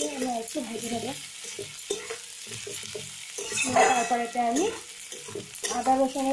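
Sliced onions and green chillies frying in oil in a steel kadai, sizzling while a spatula stirs and scrapes them around the pan. A pitched sound comes twice, near the start and again about four seconds in, and is the loudest thing.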